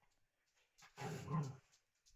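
A small dog gives one short vocalisation of under a second, about a second in, during rough play with another small dog.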